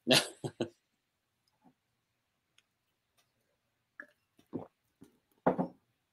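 A man's short laugh, then after a pause a few brief throat sounds, swallows, as he drinks from a glass.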